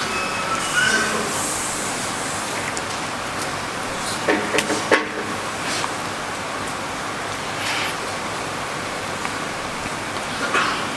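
Steady hiss of background room noise, with a few soft knocks about four to five seconds in.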